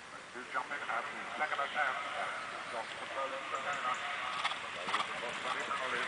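Indistinct voices talking, with a few faint clicks about four and a half seconds in.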